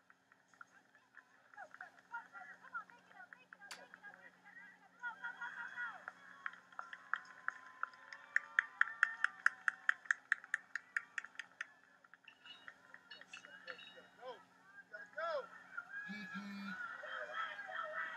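Distant spectators' voices and shouts at a track meet during a sprint relay. About eight seconds in comes a quick, even run of sharp clicks, about eight a second for some three seconds.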